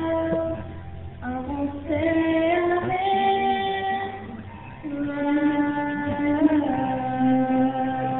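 Two girls singing a song, holding long notes and sliding between pitches, with short breaks about a second in and again just before the halfway point. Heard through a mobile phone's microphone, which cuts off the high end.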